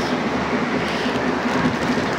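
Steady outdoor background noise: a continuous rushing hiss with a faint low hum and no distinct events.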